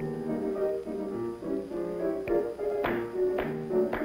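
Piano accompaniment for a dance class, playing a steady run of chords, with several thuds of bare feet landing on the wooden studio floor in the second half.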